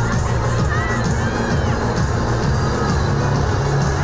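Music playing with a crowd cheering and shouting, a few whoops rising above the noise.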